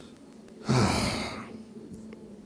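A man sighs once into a handheld microphone, a breathy, partly voiced sigh starting a little under a second in and fading within about a second.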